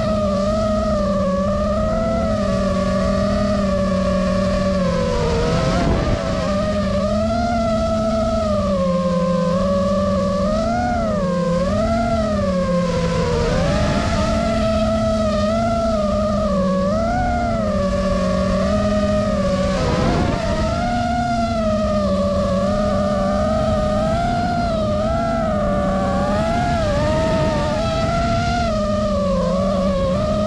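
FPV quadcopter's electric motors and propellers whining, the pitch rising and falling continuously as the throttle changes through banking and swooping flight.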